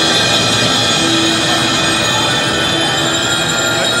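Youth percussion ensemble playing, with marimba and other keyboard percussion over drums, and held ringing tones throughout.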